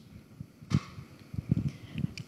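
Handling noise from a handheld microphone as it is passed from one person's hand to another's: a dull thump a little before a second in, then a few softer knocks.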